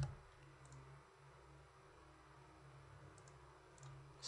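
A few faint, short clicks from a computer mouse and keyboard being worked, the sharpest at the very start, over near silence with a low steady room hum.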